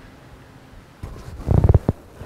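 A few quick gulps of water from a plastic bottle, starting about halfway in.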